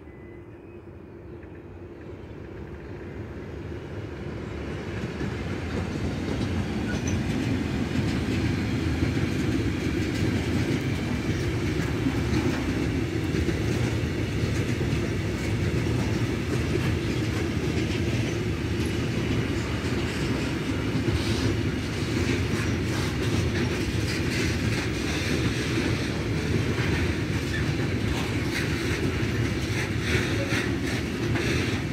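A freight train of tank wagons rolling past on the rails. The rumble grows steadily louder over the first several seconds as the train draws near, then holds steady, with repeated wheel clicks on the track in the second half.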